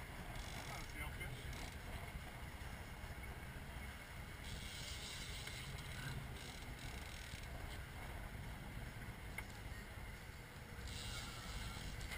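Boat's engine running with a steady low rumble, with wind on the microphone and bursts of water hissing past the hull.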